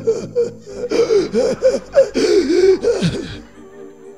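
A preacher's loud, strained voice calling out in short breathy phrases over soft background music; the voice stops a little before the end and the music carries on alone.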